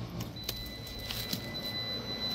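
Sumry 3 kVA hybrid solar inverter/charger's buzzer sounding a long, steady, high-pitched beep that starts about a third of a second in. It signals the switch from lost shore-power input to battery inverting. A click comes just as the beep begins.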